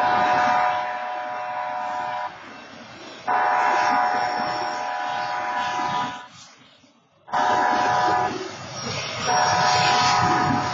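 Locomotive air horn sounding the grade-crossing signal as the train approaches: the end of a long blast, a second long blast, a short blast, and a final long blast starting near the end, each a chord of several steady tones over the train's rumble. The sound drops away briefly just before the short blast.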